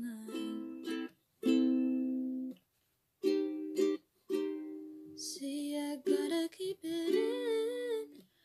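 Ukulele strumming chords in a small room, each chord ringing and fading, with a short silent break about three seconds in. A soft sung note wavers near the end.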